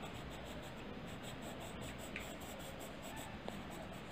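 Green colored pencil shading on paper: a soft, steady scratching of the pencil tip rubbing over the page.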